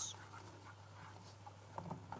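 Faint scraping of a spoon stirring béchamel roux in a pot, over a steady low hum.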